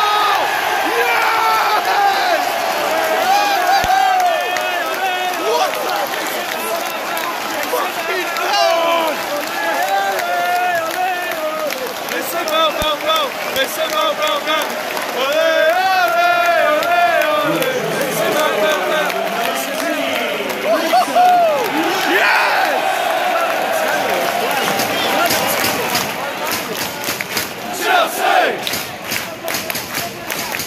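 Football stadium crowd cheering and chanting in celebration of a home goal, many voices together close around the microphone. Near the end the chanting gives way to clapping.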